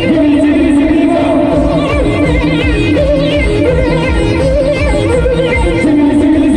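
Timli song played live by a band: men singing into microphones with a wavering, ornamented melody over an electronic keyboard and a fast, steady electronic drum-pad beat.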